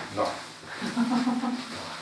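A man's voice saying "no, no", followed about a second in by a held, steady voiced sound lasting under a second.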